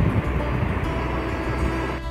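Steady low rumble and hiss with a low hum underneath, slowly fading.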